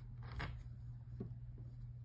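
Quiet room tone: a steady low hum with a couple of faint, short ticks.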